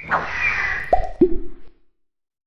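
Cartoon-style sound effects for an animated logo: a whooshing sweep, then two quick plops that drop in pitch, one just after the other, and the sound stops shortly before the end.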